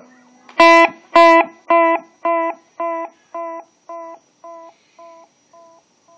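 Electric guitar through a TC Electronic Flashback X4 delay pedal: a single note picked twice, then a basic delay with a few repeats. The echoes come about twice a second and fade steadily away over about four seconds.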